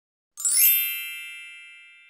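A bright chime, the logo's sound sting: a sparkling shimmer about half a second in, then several ringing tones that slowly fade away.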